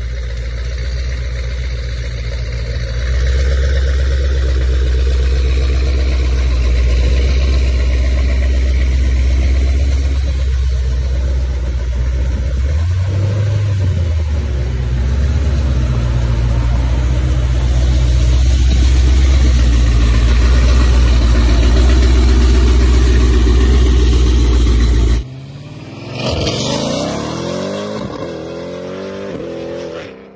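Modified Jeep Grand Cherokee Trackhawk's supercharged 6.2-litre V8 idling and creeping at low speed with a steady deep exhaust note, with one short rev about halfway through. Near the end the sound cuts abruptly to road traffic, with a vehicle going by in a falling pitch.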